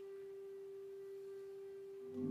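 A single held musical note, steady and pure, sounding on its own after the fuller music falls away; more instruments come back in just after it.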